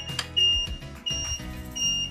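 Electronic beeper on an electric vehicle prototype sounding a repeating high beep, each beep about a third of a second long, roughly every 0.7 s, over background music.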